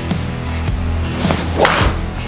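Guitar-driven rock backing music, with a TaylorMade Stealth driver striking a golf ball near the end: one loud, short hit with a swish.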